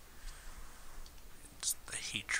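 Faint whispered voices repeating a chant, with a few sharp hissing consonants near the end.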